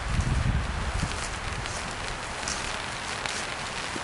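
Light rain hitting a tarp overhead, a steady even patter, with a low rumble in the first second or so.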